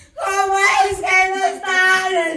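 A man singing in a high, strained voice into a handheld microphone, with no instrumental accompaniment. He starts a new phrase just after a brief breath and holds long notes.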